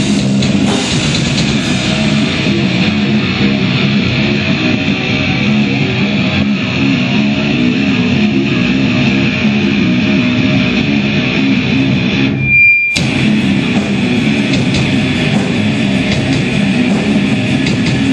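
Hardcore metal band playing live: distorted electric guitars over a drum kit, loud and continuous. About twelve and a half seconds in the music stops for a moment, leaving only a short high steady tone, then crashes back in.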